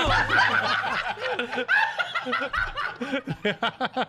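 Several men laughing together in a group, overlapping chuckles and bursts of laughter.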